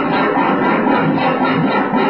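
Loud, dense experimental noise music, a thick wash of sound with no clear tune, held at a steady level.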